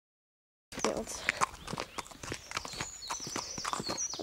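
A horse's hooves walking, an irregular run of clip-clop steps on the track, starting after a moment of dead silence. High chirping tones come in near the end.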